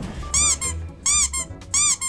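High, rubbery squeaks in quick pairs, about one pair every 0.7 seconds, each squeak rising and falling in pitch, over background music.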